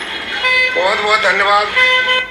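A boy talking on a busy street while a vehicle horn toots several short times behind his voice.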